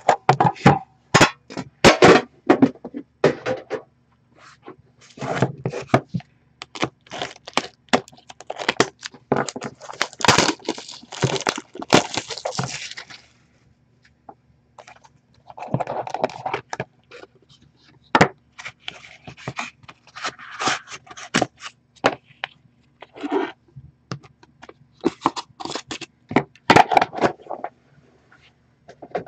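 Hands opening a 2014-15 Upper Deck The Cup box: irregular scraping, crackling and tearing of the packaging, with sharp clicks, in bursts with short pauses.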